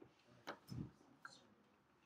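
Near-silent room tone broken by a sharp click about half a second in, a soft low thump just after it, and a fainter click a little past the middle.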